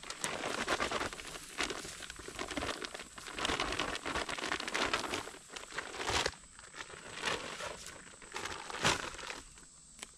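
Plastic bag of powdered 4S Draw deer attractant crinkling and rustling as the powder is shaken out over a salt block. The rustling is dense for the first six seconds, then thins out to occasional rustles.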